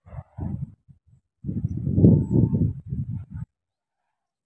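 Spotted dove cooing: a low, throaty coo, a short phrase at the start, then a louder, longer one from about a second and a half in that cuts off near the end.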